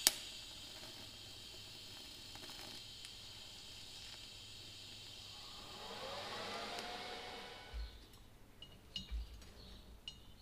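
TIG welding arc tacking a crack in a cast-iron turbocharger exhaust housing with high-nickel filler rod: a steady hiss that swells with a rising whine about six seconds in, then stops about eight seconds in. Two dull knocks follow near the end.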